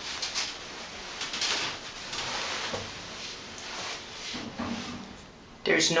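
Vintage Dover Turnbull elevator car in operation on its way down to the basement: a mechanical rushing, sliding noise with a few clicks over the first three seconds, then quieter.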